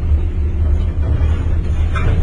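Steady low rumble of a gondola cabin riding along its cable, with a brief higher hiss near the end.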